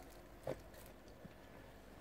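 Very quiet room tone with one short click about half a second in and a fainter tick a little later.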